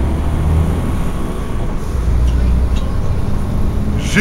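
City bus's engine and road rumble heard from inside the passenger cabin: a steady low drone that swells twice.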